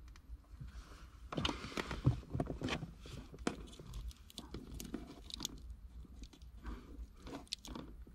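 Electrical tape being pulled off the roll and wrapped around the wires at a harness connector: irregular crackling and ripping with small clicks, starting about a second in.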